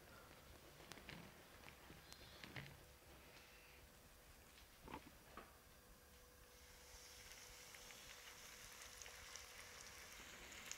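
Near silence with a few faint soft knocks, then from about seven seconds in a faint high sizzle as a flour-coated chicken breast fries in hot oil in a frying pan.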